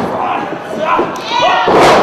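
Wrestlers' bodies hitting the ring mat: a thud at the start and a louder slam near the end, with shouting voices from the crowd in between.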